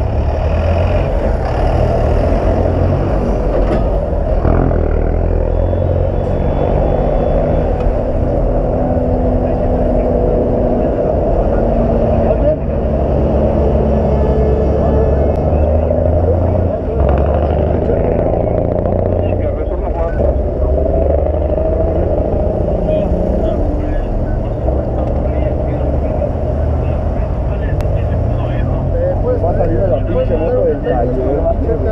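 Muffled, indistinct voices over a steady low rumble of street traffic, with the microphone close to the wearer's clothing.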